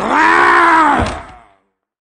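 A single drawn-out vocal whine from a voice actor playing Cringer, the cowardly tiger: one held note that rises and then falls in pitch over about a second and a half. A low thump falls about a second in.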